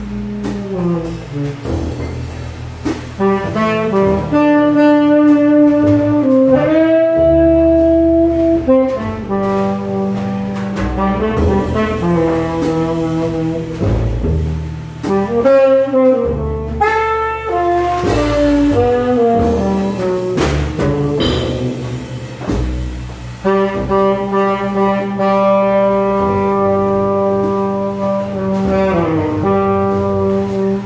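Jazz trio playing a slow ballad: a saxophone carries the melody in long held notes, sliding between pitches, over an upright double bass and drums.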